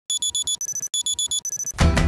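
Digital alarm-clock beeping: two rounds of four quick, high beeps, each round followed by a short held tone. Upbeat music with a heavy bass line comes in near the end.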